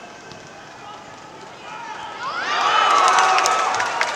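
A man's excited, drawn-out shout over football stadium ambience. It rises in pitch about two and a half seconds in and holds for over a second as a corner is headed at goal.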